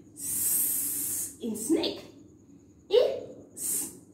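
A woman's voice sounding out letters for phonics: a long hissed "sss" lasting about a second, then short vowel sounds, and another brief "s" hiss near the end.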